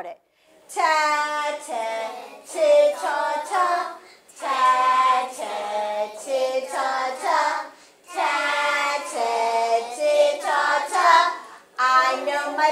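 A class of young children chanting consonant-vowel blend syllables (ta, te, ti, to, tu) together in a sing-song. The chant comes in three phrases with short breaks about four and eight seconds in.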